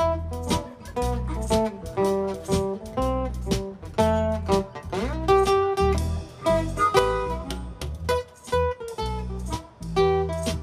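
Live band playing an instrumental break: a harmonica solo with held notes and an upward bend about halfway through, over strummed acoustic guitar, bass and drums keeping a steady beat.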